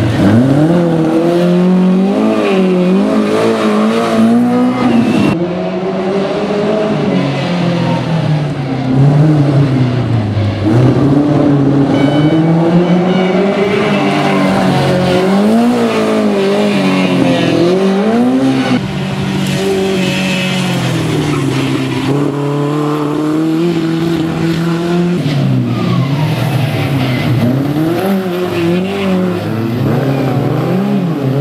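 A historic Škoda 120 S rally car's rear-mounted four-cylinder engine revving hard through tight corners, its note climbing and dropping again and again with throttle and gear changes. Tyres squeal as the car slides.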